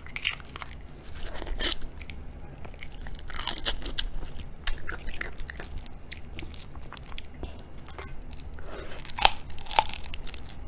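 Raw tiger prawn being peeled by hand close to the microphone: the shell and head crackle and snap in short irregular bursts, then a sharper crunch near the end as the prawn is bitten.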